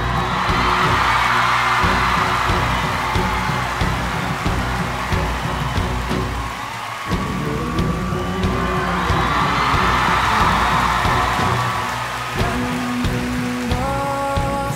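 Live band music led by drums, with pitched strings and keyboard underneath. Two long swelling hisses rise and fall over the music, one at the start and another about eight seconds in.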